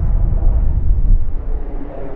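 Wind buffeting the camera microphone, an uneven low rumble.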